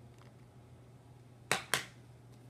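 Two sharp plastic clicks a quarter second apart, about one and a half seconds in: buttons pressed on a TV remote held close.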